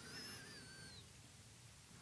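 Near silence: room tone, with a faint high whistle-like tone lasting about a second at the start.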